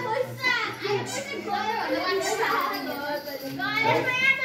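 Several high-pitched voices, like children's, chattering and calling over one another.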